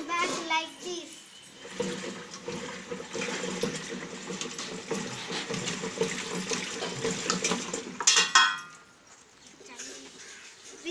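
Water sloshing and churning inside the plastic drum of a bicycle-chain-driven washing machine as its agitator is turned through the clothes. The churning starts about two seconds in and stops after a short louder burst near the end.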